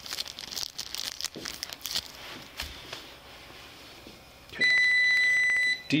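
A breath-alcohol test instrument gives one loud, steady, high-pitched beep about 1.3 s long near the end, the signal that it is ready for a breath sample. Before it come quieter rustling and handling clicks as the breath tube and mouthpiece are readied.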